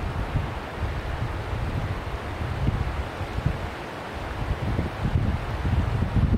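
Wind buffeting the microphone: an uneven low rumble that swells and fades, over a steady hiss.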